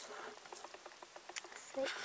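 Clear plastic compartment case of nail-art glitter being handled: a few faint, light clicks and taps of the plastic, scattered and irregular.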